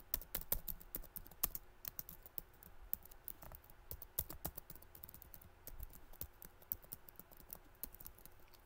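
Faint, quick, irregular light clicks and taps, several a second, of the kind made by fingers tapping keys or a screen.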